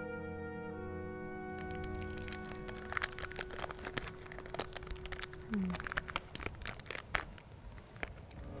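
Orchestral music with sustained tones fades out in the first second and a half. It gives way to a run of irregular dry crackles and crinkles, like paper or a wrapper being handled, that continue to the end.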